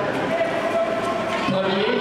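People's voices calling out, with one drawn-out call lasting about a second.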